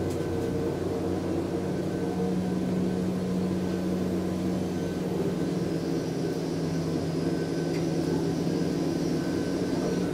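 Schindler Smart 002 machine-room-less traction elevator car travelling upward, giving a steady ride hum with a constant low motor tone. A faint high whine joins about halfway through.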